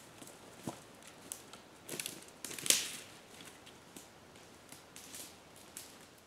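Footsteps crunching through dry leaves and twigs on a forest floor: an irregular run of crackles and snaps, loudest about two and a half seconds in, then fainter as the walker moves away.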